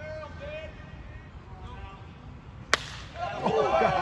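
A baseball bat hitting a pitched ball with one sharp crack about two and a half seconds in, followed at once by players and spectators shouting and cheering.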